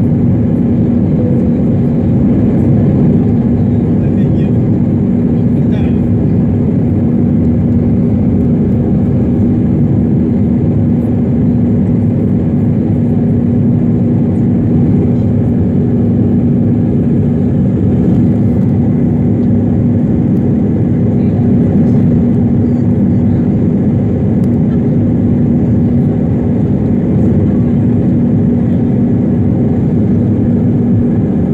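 Steady, loud engine drone and rushing air inside the cabin of an Airbus A319 climbing out through cloud, with a constant low hum.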